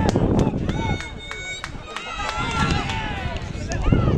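Men's voices shouting and calling across a football pitch during play, over a low rumble, with a quick run of sharp taps in the first couple of seconds.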